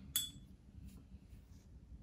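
A single short clink about a fraction of a second in, a paintbrush knocked against a hard container while the brush is rinsed or reloaded, with a brief high ring after it. A few faint soft rustles follow.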